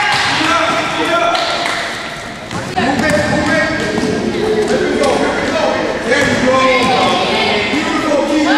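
Basketball game sound in a gymnasium: overlapping, unintelligible shouts and chatter from players and onlookers echoing in the hall, with the ball bouncing on the hardwood floor.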